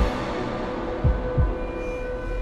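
Background music with sustained held tones and a few low hits.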